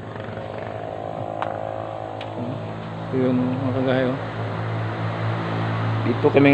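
A motor running with a steady hum, with a person's voice over it from about three seconds in.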